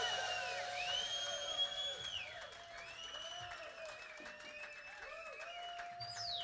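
Live audience applauding and cheering between songs, with a few rising-and-falling whistle-like tones over the clapping.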